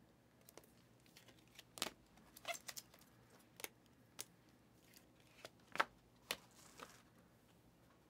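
Trading cards being handled: card stock and a clear plastic card sleeve clicking and sliding against each other, heard as a string of short, sharp, irregular clicks. The loudest click comes a little before six seconds in, followed by a brief soft sliding rustle.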